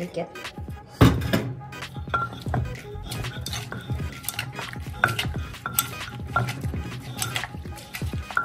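Wooden pestle pounding shredded carrot in a mortar for carrot som tam (papaya-salad style), a steady run of knocks about two a second, the loudest about a second in, with a spoon clinking against the bowl as it turns the mix.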